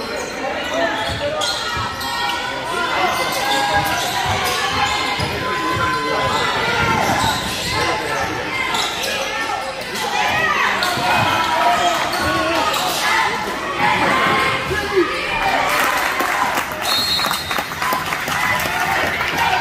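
Basketball dribbled and bouncing on a hardwood gym floor during play, with voices of players and spectators echoing in the hall. A short high whistle sounds near the end.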